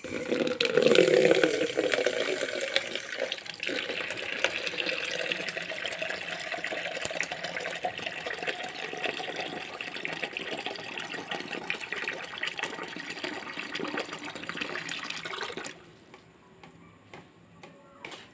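Water running and splashing as potted plants are watered, loudest in the first couple of seconds, then steady, and cutting off abruptly about sixteen seconds in.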